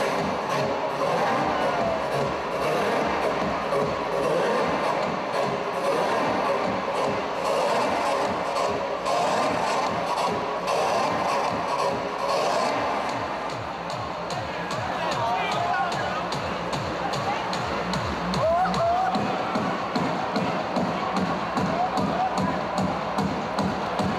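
Loud dance music with a steady, fast beat played over a party sound system, with a crowd talking, shouting and cheering over it; a few shouts stand out in the second half.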